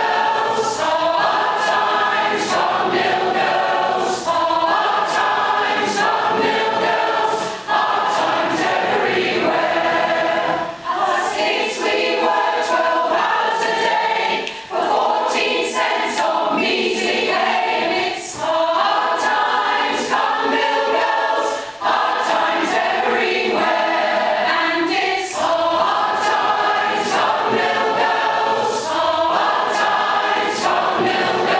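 Large mixed choir of men and women singing a folk song unaccompanied, in full voice, with brief breaks between phrases.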